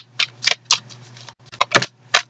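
Tarot deck being shuffled by hand: a quick, irregular string of sharp card snaps, several a second.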